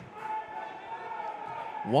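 A football kicked along a grass pitch near the start, with faint shouts from players across the open stadium; a man's commentary voice comes in at the very end.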